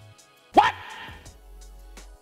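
A man's brief rising exclamation, "what?", about half a second in, followed by a short breathy rush, with otherwise only a faint steady background.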